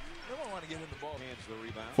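Faint voice of a man talking on the basketball game's television broadcast, over low arena background sound.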